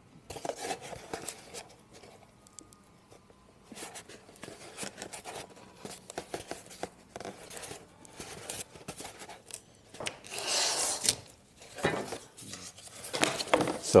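Pieces of corrugated cardboard being handled, bent and folded by hand: irregular rustles, scrapes and creases, with a longer, louder scraping rasp about ten seconds in.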